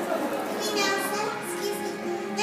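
Children in a theatre audience calling out and cheering over the stage show's background music, with a burst of high children's voices in the middle.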